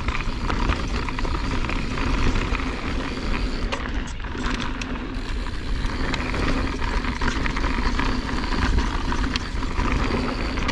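Mountain bike descending a dry, rocky dirt trail: steady tyre rumble and a low buffeting of wind on the microphone, with frequent small rattles and clicks from the bike over roots and stones.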